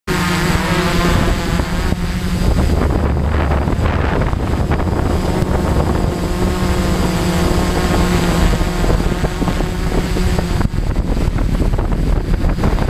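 Brushless motors and propellers of a 450-size quadcopter, heard from its onboard camera: a steady loud whine and rush whose pitch shifts with throttle as it manoeuvres.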